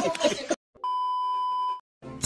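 A single steady electronic beep, one pure high tone held for about a second, of the kind dubbed in as a censor bleep; it starts just under a second in, after a moment of silence.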